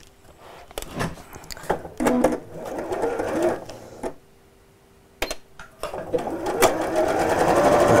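A few sharp clicks, then about six seconds in an electric sewing machine starts stitching, its steady motor hum building toward the end.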